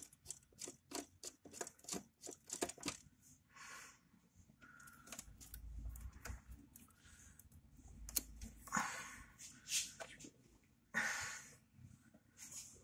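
Faint metallic clicks of a screwdriver working a terminal screw on an electrical contactor, about four a second over the first three seconds. Then come short rubbing and scraping sounds as a stranded wire is pulled free of the terminal, to swap two of the motor's phase leads.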